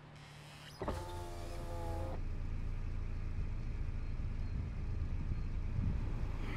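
A car engine starting: a sudden electric whine lasting about a second, then a low, steady engine rumble as it runs.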